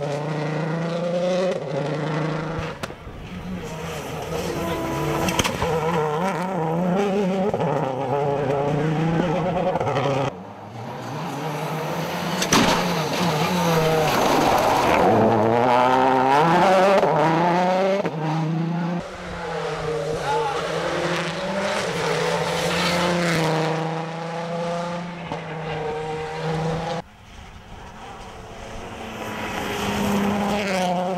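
Rally car engines, among them a Suzuki SX4 WRC, running hard past the microphone, the revs rising and falling through gear changes and lifts. The sound breaks off suddenly three times, about ten, nineteen and twenty-seven seconds in, as one clip gives way to the next.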